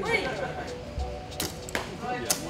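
A mini bow shot: a sharp snap of the string and, about a third of a second later, the arrow smacking into the target. Both come over background music.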